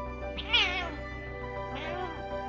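A cat gives two meowing cries with a wavering pitch, a loud one about half a second in and a shorter one near the end, while the two cats swat at each other in a play-fight. Background music plays throughout.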